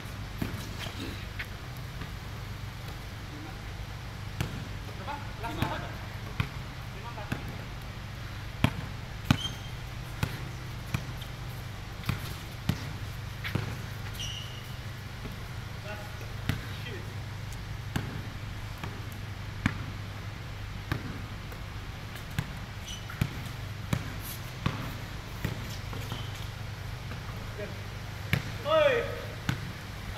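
A basketball being dribbled and bounced on a concrete court: sharp, irregular bounces about every second or two, over a steady low hum.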